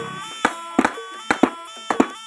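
Barongan mask jaws snapping shut, about six sharp wooden clacks at uneven intervals, over faint background music with held tones.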